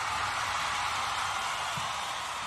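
A steady, even hiss-like noise with no beat or tune, part of a podcast's intro jingle.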